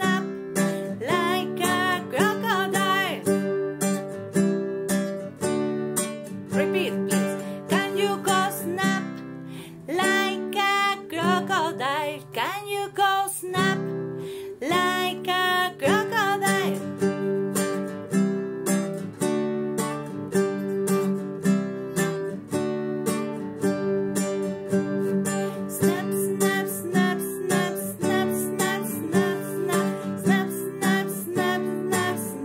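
A woman singing a simple children's song in short phrases while strumming an acoustic guitar in a steady rhythm. The strummed chords carry on between the sung lines.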